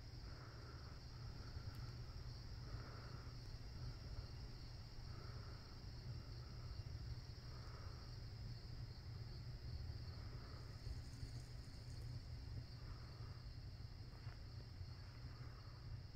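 Faint chorus of night insects: a steady high-pitched drone with softer, lower chirps recurring every second or two, over a low steady rumble.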